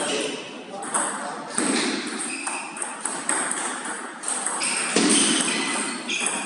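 Table tennis balls clicking off bats and table tops in quick, irregular strokes, from this rally and from neighbouring tables.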